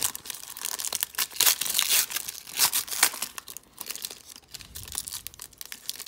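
Foil wrapper of a hockey trading-card pack crinkling and tearing as fingers pick at a seal that won't open, a dense run of sharp crackles that grows quieter in the second half.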